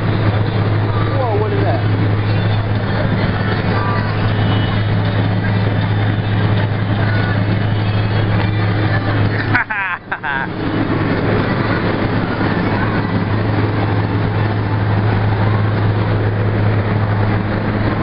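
Loud, steady machine hum with a rushing noise over it and faint voices underneath; it drops out briefly about ten seconds in.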